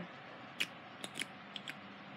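A handful of short, sharp clicks of small makeup items being handled, spaced unevenly over a couple of seconds.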